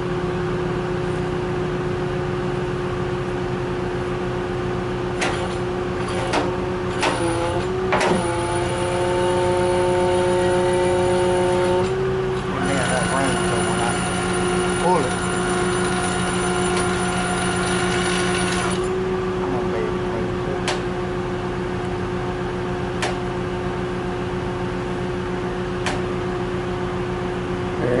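Tigercat L830C feller buncher's diesel engine running steadily with its hydraulics working, pushing the piston out of the cylinder barrel. Higher whining tones come in twice: from about eight to twelve seconds, then louder from about twelve and a half to nineteen seconds. A few clicks are heard between about five and eight seconds.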